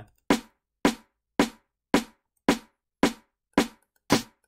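Sampled electronic snare from a dance-track build-up (a Cymatics garage snare sample) playing on its own: seven short hits at a steady pace of about two a second, with silence between them.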